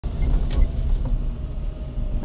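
Low, steady rumble of a car rolling slowly, picked up inside the cabin by a dash camera's microphone, with a light click or knock about half a second in.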